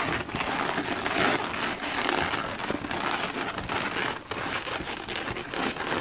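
Inflated latex modelling balloons rubbing against each other and against the hands as they are twisted and swapped into place, a continuous crinkly rubbing.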